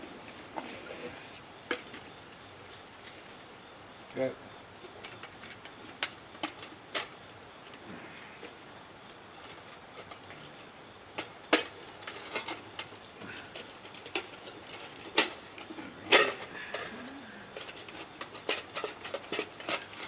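Camping cookware and gear being handled and set out on a rock: scattered light clicks and knocks, the sharpest about halfway through and a few seconds later, over a faint steady high hiss.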